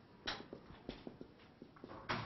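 Dry-erase marker writing on a whiteboard: one faint scratchy stroke about a quarter second in, then a run of small, quick taps and squeaks as letters are formed.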